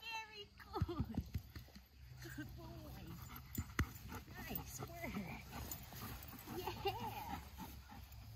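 A dog making short vocal sounds, mixed with a person's quiet voice, over a low steady hum.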